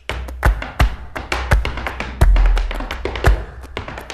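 Flamenco music driven by rapid, sharp percussive strikes, several a second at uneven spacing, with a heavier low thump about two seconds in.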